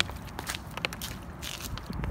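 Footsteps on a concrete sidewalk: a few irregular taps and scuffs while walking.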